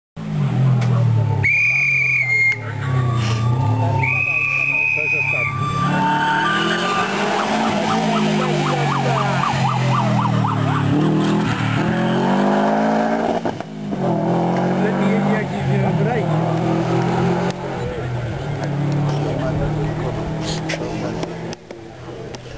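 Rally car engine revving hard through its gears, its pitch climbing and dropping again and again. Two long, shrill whistle blasts sound near the start.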